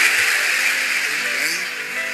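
Live audience laughing at a punchline, the crowd noise slowly dying down.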